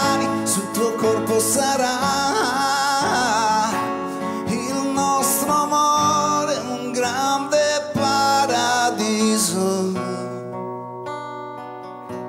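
Live ballad in which a man sings over a strummed acoustic guitar and backing instruments. In the last two seconds the music drops to quieter held chords.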